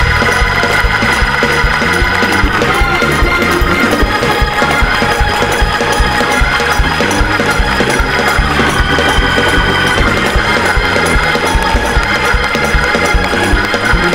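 Organ music with a steady beat, and a congregation clapping along.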